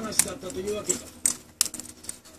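Green-cheeked conures cracking hemp seed shells with their beaks: several sharp, crisp snaps at uneven intervals, the loudest just after the start. Voices talk in the background.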